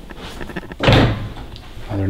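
Interior closet door being opened, with a single short, loud thud about a second in.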